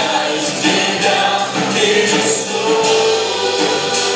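A live church worship band plays a praise song with keyboard, bass guitar and drums keeping a steady beat, while men sing the melody into microphones.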